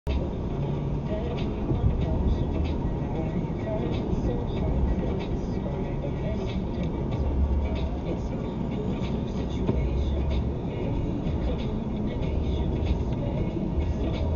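Steady road and engine noise inside a moving car, picked up by a dashcam's microphone, with a deep low rumble.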